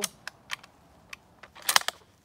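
Rock Island Arsenal M1903 bolt-action rifle in .30-06 being loaded by hand: a few light metallic clicks, then a quick cluster of louder clicks near the end as the round goes in and the bolt is worked closed.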